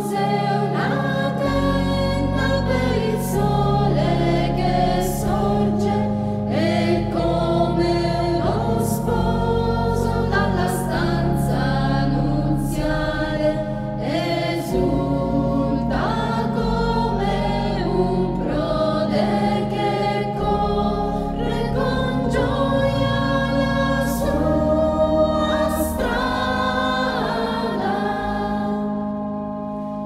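Choir singing a church hymn over instrumental accompaniment, with sustained low notes under the sung melody.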